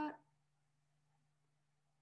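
A word ends just at the start, then near silence: faint room tone with a low, steady hum.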